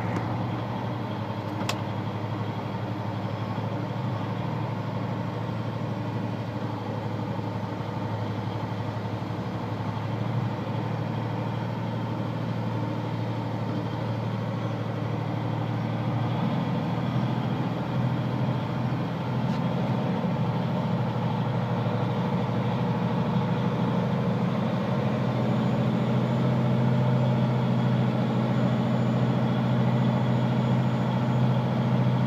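Engine and road noise inside the cab of a vehicle driving slowly, a steady low drone that grows louder about halfway through as the engine works harder. There is a single sharp click near the start.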